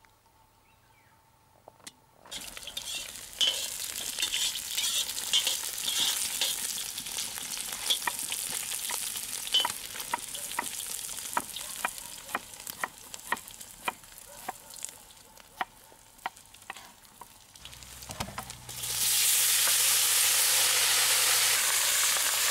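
Pieces of pork fat frying in a cast-iron kazan: a sizzle with frequent sharp pops and ticks as they are stirred with a metal skimmer, starting about two seconds in. Near the end a much louder, steady sizzle sets in as the meat hits the hot rendered fat.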